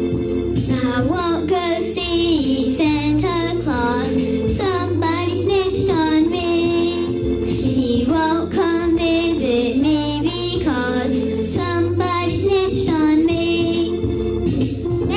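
A young girl singing a solo over a steady organ accompaniment; her sung phrases begin just under a second in, with held, wavering notes.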